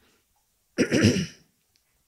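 A man clears his throat once, briefly, close to the microphone.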